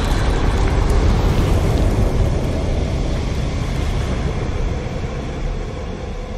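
Low rumbling sound effect with a hiss above it, slowly fading away, in a flaming logo intro.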